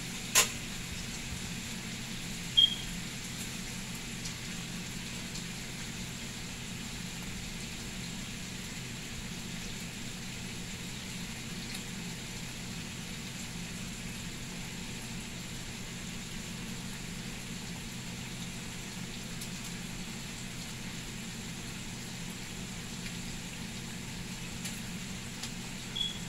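Bacon strips, still pink and early in cooking, sizzling steadily in a stainless-steel skillet. About half a second in, a metal fork is set down on the enamel stovetop with a sharp clack, and a couple of seconds later a short, ringing metallic clink.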